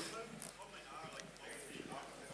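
Faint laughter and distant voices speaking off microphone, over quiet room tone.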